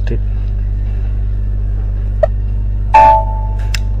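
A computer's notification chime, a short ringing tone with several pitches, sounds about three seconds in as the software confirms the invoice document has been posted. A short tick comes a second before it, and a steady electrical hum runs underneath.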